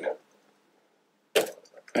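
A single sharp plastic snap about one and a half seconds in, with a few faint clicks after it: the upper crane section of a plastic toy crawler crane popping off its tracked base.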